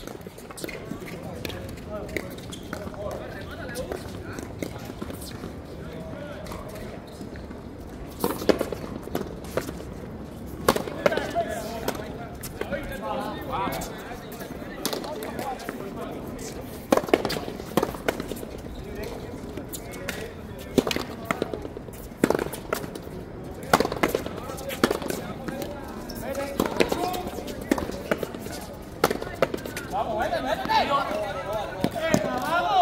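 Sharp, irregular cracks of a hard ball struck with rackets and hitting the fronton wall during a frontenis rally, with players' voices between strikes.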